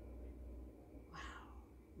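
Quiet room tone with a low steady hum, and one soft, breathy spoken "wow" about a second in.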